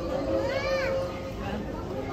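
Background chatter of other people in a café, with one high voice rising and falling briefly about half a second in, over a steady tone that fades out after the first second or so.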